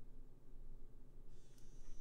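Quiet room tone: a faint steady low hum, with a faint high hiss coming in near the end.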